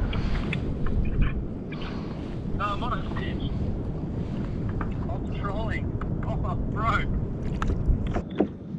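Wind buffeting the microphone on open water, a steady low rumble, with a few brief faint voice calls over it.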